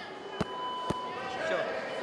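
A fist striking a padded, quilted kobudo chest protector: three hard blows about half a second apart.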